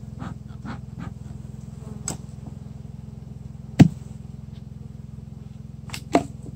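Honeybee colony humming steadily from an opened hive, with a few light clicks and one sharp wooden knock about four seconds in as the hive-top feeder lid is lifted off and set down.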